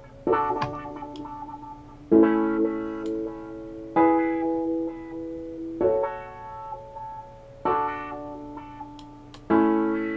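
Piano chords played through Studio One's AutoFilter running a stepped 16-step filter pattern, struck six times about every two seconds, each chord ringing and fading. The top end varies from chord to chord as the filter opens and closes.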